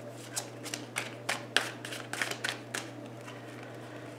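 A deck of tarot cards being shuffled in the hands: a run of quick, irregular card clicks that stops about three seconds in.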